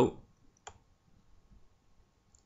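A single computer mouse click about two-thirds of a second in, with near quiet around it.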